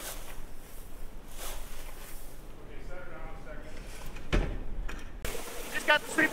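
Shelled corn rustling and scraping as a sweep auger is dragged into place through the grain, with faint voices in the background and a single thud about four seconds in.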